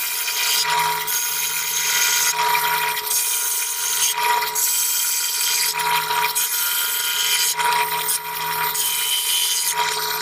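Drill press running with a Forstner bit, boring repeated overlapping holes into cherry wood to hollow out a case. The motor's steady whine carries on throughout, and a rasping cutting sound swells and fades about once a second as the bit is plunged in and raised again.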